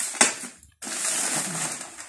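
Rustling and crinkling of the folded plastic of a new inflatable play house being handled, with a sharp click just after the start and a steady rustle from about a second in.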